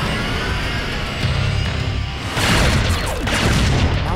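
Dramatic action-score music with cartoon sound effects. A loud rushing blast swells in about halfway through and carries on to the end.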